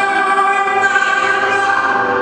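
A woman blues singer singing long held notes into a microphone, the pitch shifting about once a second.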